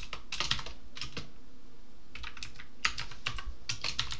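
Typing on a computer keyboard: quick runs of keystrokes, with a pause of about a second between two bursts.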